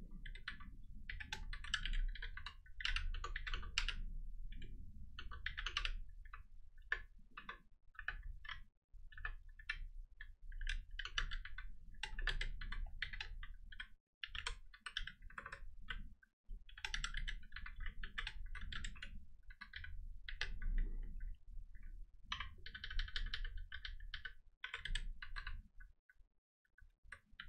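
Typing on a computer keyboard: runs of rapid keystrokes with short pauses between them, as code is entered line by line.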